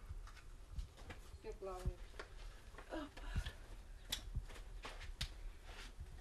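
Scattered light clicks and knocks of belongings and wet photographs being handled in a small room, with a couple of short snatches of a voice.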